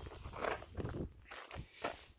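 Faint, irregular shuffling and a few soft crunches of footsteps on gravel.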